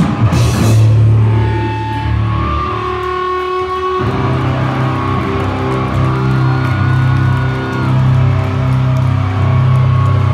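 Live grindcore band with loud distorted electric guitar holding low sustained chords. Drums and cymbals crash right at the start. The held chord changes about four seconds in, and a thin high tone hangs over it in the middle.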